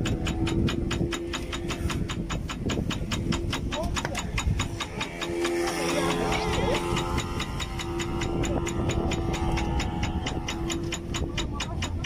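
Fishing boat's engine idling with an even knock of about six beats a second, and men's voices calling out around the middle.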